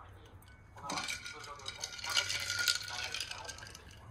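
Ice cubes rattling and clinking against glass as a glass tea server of iced tea is lifted and tipped, with light glass-on-glass knocks, about a second in until near the end.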